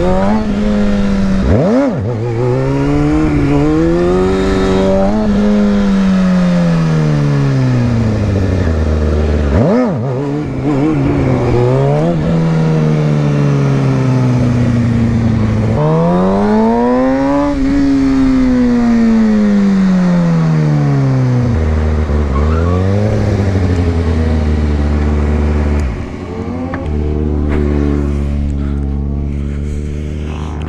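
Sportbike engine revving hard and falling back in long sweeps as the rider lifts into wheelies, with sharp quick blips about 2 and 10 seconds in. From about two thirds of the way through it settles to a low, steady idle.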